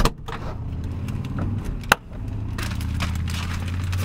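Car running with a steady low hum, heard from inside the cabin, with one sharp click about two seconds in. From about two and a half seconds, crackly rustling joins in, like a plastic-wrapped bouquet being handled as someone climbs in.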